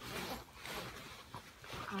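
Faint rustling and handling noises as a hand rummages through a backpack pocket, with a few soft knocks and scrapes.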